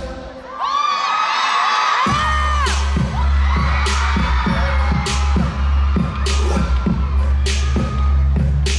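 Audience screaming and whooping over a brief lull in the music, then a heavy bass-driven electronic beat kicks in about two seconds in and carries on, with cheers still heard above it.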